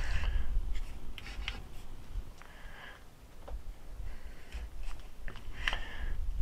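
Low, uneven wind rumble on the microphone, with scattered light clicks and short rubbing sounds from hands handling the rifle and scope. The handling sounds are busiest at the start and again just before the end.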